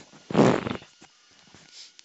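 A short breathy puff of air into a close microphone, about half a second long, near the start, followed by a few faint ticks.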